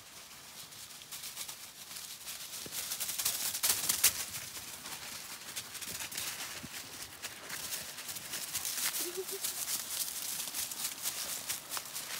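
Footsteps crunching and rustling through dry fallen leaves, a run of quick crackles with the loudest crunch about four seconds in. A brief faint chirp comes about nine seconds in.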